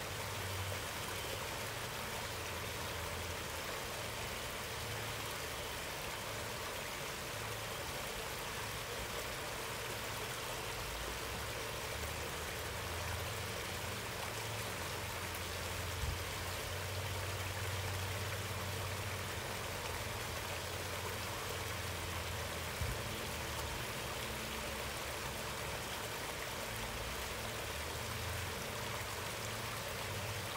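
Small garden-pond waterfall splashing steadily over rocks into the pond, with a low rumble underneath and two brief faint knocks about halfway through and later on.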